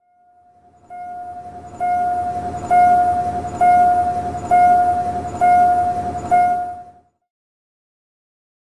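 A bell ringing with about one strike a second over a low rumble, growing louder strike by strike and stopping abruptly about seven seconds in.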